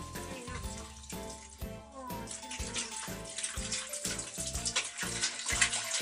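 Water pouring and splashing from a large plastic bottle into a plastic tub, growing louder over the second half, over background music with a steady beat.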